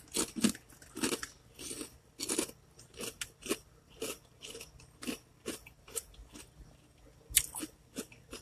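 Close-up chewing of crunchy snack chips, a crisp crunch about twice a second, loudest over the first couple of seconds and then fainter, with one sharper crunch near the end.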